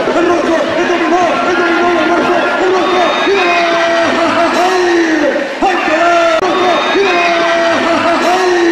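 Men's voices shouting in long, drawn-out calls over crowd noise, loud throughout.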